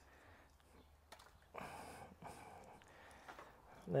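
A dog biting at a scrap of meat thrown to it: a short, faint burst about a second and a half in, with a few small clicks around it.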